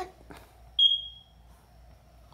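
A single high-pitched electronic chirp, loud and clear, about a second in, fading out over half a second.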